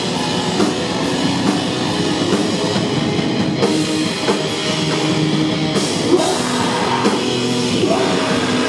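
Heavy metal band playing live: distorted electric guitars, bass and drum kit, loud and unbroken.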